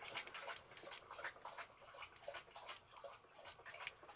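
A large dog lapping water from a bowl in the background: a faint, quick run of wet laps.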